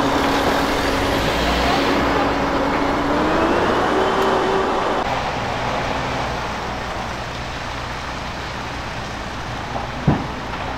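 An engine running steadily under a dense rushing noise. Its tone rises a little about three and a half seconds in and stops about five seconds in, leaving a quieter steady rush.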